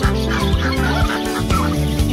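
Chickens clucking in short, wavering calls over background music with a steady, repeating bass pattern.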